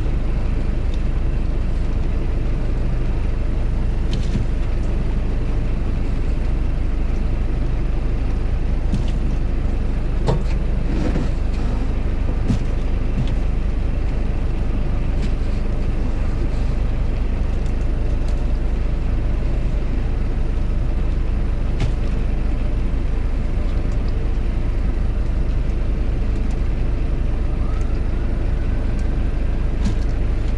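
A fishing boat's engine running at a steady drone, with a few brief knocks as fish are handled in plastic fish boxes about ten seconds in and again a little after twenty seconds.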